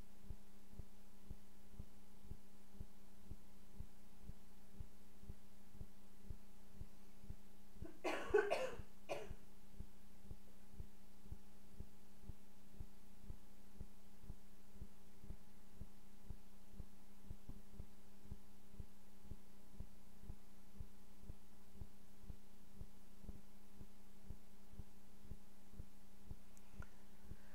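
A person coughs once, briefly, about eight seconds in, over a steady low electrical hum with a faint low pulse repeating a few times a second.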